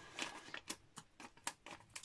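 Faint handling of a white cardstock offcut on a craft mat: a handful of short, light rustles and taps as the card is picked up and moved.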